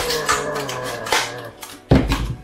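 Hard plastic casing of a laptop battery pack cracking and snapping as it is pried apart with pliers. There are several sharp cracks, and the loudest snap comes near the end, over sustained music-like tones.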